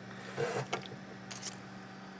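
Faint handling noise: a few short clinks and scrapes as a slotted metal shelf bracket, with a motor and propeller wired onto it, is turned in the hand. A steady low hum runs underneath.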